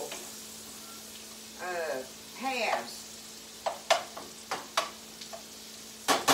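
Brussels sprouts browning in a skillet, sizzling steadily. Several sharp clicks of a utensil against the pan come in the second half.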